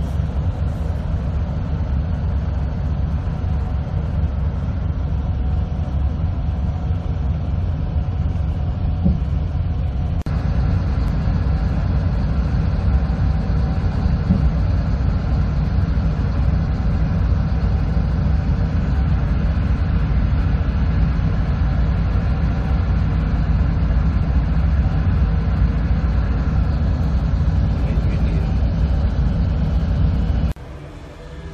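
Steady low rumble of a tour bus's engine and tyres, heard from inside the cabin as it drives. It grows slightly louder after about ten seconds.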